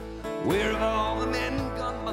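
Live country band playing, led by acoustic guitars, with a melody line that slides up about half a second in and then wavers on a held note.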